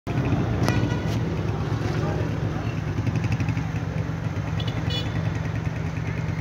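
Steady low engine rumble, with faint voices and a few clicks mixed in.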